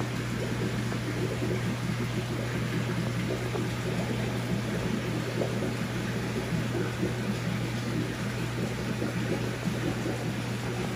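Aquarium equipment running steadily: a constant low hum under an even wash of noise.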